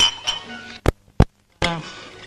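Two sharp clicks about a third of a second apart, followed by a moment of dead silence.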